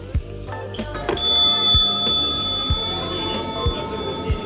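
A chrome counter service bell struck once about a second in, its high ring dying away over roughly two seconds, over background music with a steady beat.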